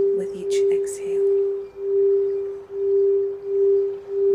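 Quartz crystal singing bowl played with a wand, sustaining one steady mid-pitched tone that swells and fades about once a second.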